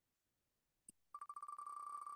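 Wheel of Names web wheel's electronic tick sound as the name wheel spins. One click comes just before a second in, then a rapid, even run of short beeping ticks on one tone, about ten a second.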